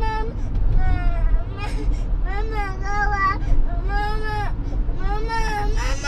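Toddler crying out in about four long, high-pitched wails, over the low steady rumble of the moving car.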